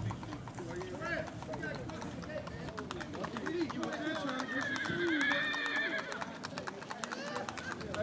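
A gaited horse's hooves clip-clopping on a paved road in a quick, even rhythm under a rider, with people's voices in the background.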